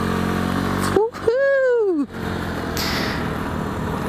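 125cc scooter engine running as the scooter rides away. About a second in, the rider's voice is drawn out for about a second, rising then falling in pitch, and then the steady engine and road noise carries on.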